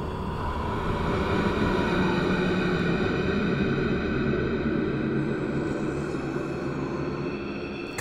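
Steady, dark droning rumble with faint held tones, a brooding ambient soundtrack carried on from the music before it.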